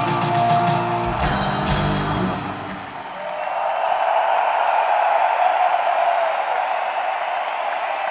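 A live rock trio's electric guitar, bass and drums end the song on a final chord that dies away about three seconds in, followed by a crowd cheering and applauding.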